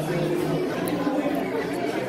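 Background chatter: several people talking at once at tables in a hall, no single voice standing out.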